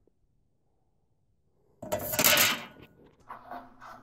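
Almost two seconds of near silence, then a sudden short burst of rustling noise followed by a few fainter clatters and knocks, like something being handled close by.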